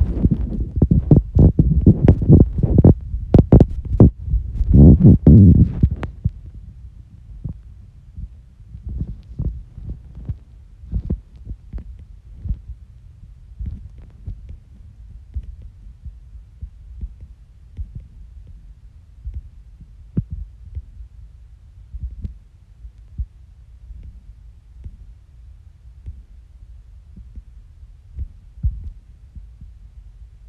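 Handling noise on a phone's own microphone: irregular low thumps and taps from fingers on the handset while typing and scrolling. The thumps are loud and dense for about the first six seconds, then turn fainter and sparser over a low hum.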